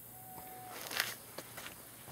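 Faint clicks and light knocks of a handheld camera and gear being handled, the sharpest about a second in, with a faint steady whistle-like note about half a second long near the start.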